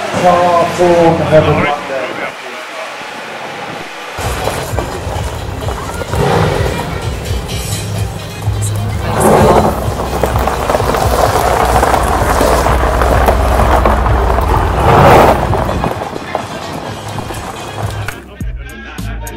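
Sports car engines revving and running: a rev that falls away in the first second or two, then a steady low exhaust rumble that swells louder twice. Music and voices are mixed in.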